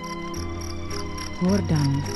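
Crickets chirping in a steady pulsing rhythm, about four chirps a second, over a held musical chord. A woman's voice comes in near the end.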